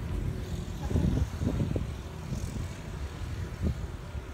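Outdoor background rumble with uneven low swells, like wind on the microphone, and no music or speech.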